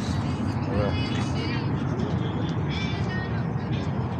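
Outdoor crowd ambience: a steady low rumble with scattered distant voices of passers-by, and no single loud event.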